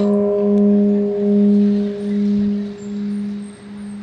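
Temple bell struck once, ringing on with a low hum that pulses in waves as it slowly fades; its higher overtones die away within a couple of seconds.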